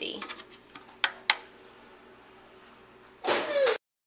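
A few sharp clicks, two of them distinct about a second in, from a finger pressing the control-panel buttons of a Ninja Cooking System. Near the end comes a short voice sound that cuts off suddenly.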